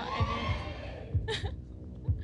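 Game-show suspense sound effect: a low heartbeat-like double thud recurring about once a second over a steady hum, with a brief voice near the start and again about a second in.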